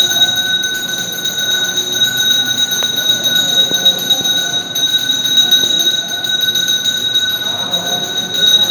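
A temple bell ringing rapidly and without pause, its clear high tones held steady throughout, as is done during the deeparadhanai lamp-waving ritual.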